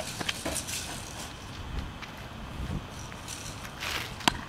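Low rumble of wind and camera handling, with a few faint clicks early on and one sharp tap just before the end.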